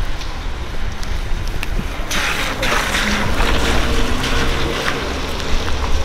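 Wind noise on an outdoor microphone: a steady low rumble, with a louder hiss for about a second starting two seconds in.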